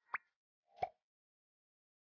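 Two short cartoon-style pop sound effects marking on-screen text appearing. The first is a quick rising blip, and the second, just under a second in, is a rounder pop.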